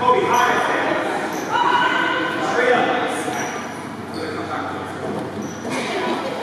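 Voices and chatter echoing in a gymnasium during a basketball game, with a basketball bouncing on the court floor.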